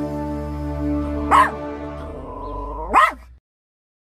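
Intro jingle music holding a sustained chord, with two dog barks about a second and a half apart. The second bark is the last sound before everything cuts off abruptly.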